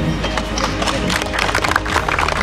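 A small group of people clapping their hands in applause, the claps starting about half a second in and growing denser, over background music.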